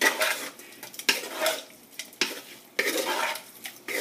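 Seasoned raw conch (lambi) pieces being mixed by hand in a metal pot, the meat knocking and scraping against the pot in uneven strokes about once a second.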